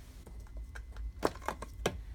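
Hands handling paper journal pages and glued-on card packaging: faint rustling with a few light, sharp taps in the second half.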